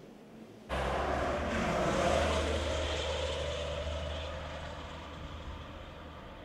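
Engine noise with a steady low hum that cuts in suddenly under a second in, then slowly fades away.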